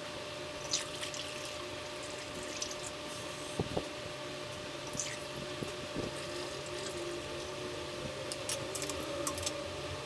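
Water poured from a measuring cup through a funnel into a plastic soda bottle, trickling faintly, mostly in the second half. A few light knocks of the plastic cup and bottle being handled.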